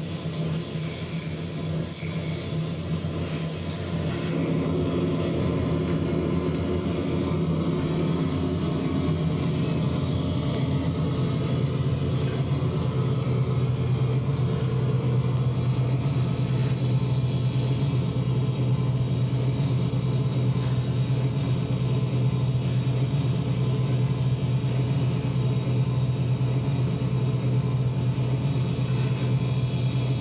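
Industrial noise from a homemade noise rack of effects pedals: a loud, steady low drone, with bursts of high hiss in the first few seconds. The drone settles a little lower about ten seconds in and holds.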